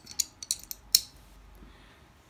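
An Archon Type B 9mm pistol's steel locking block is pressed into the slide over the barrel, with a quick run of light metal clicks as it seats. The last and loudest click comes just under a second in.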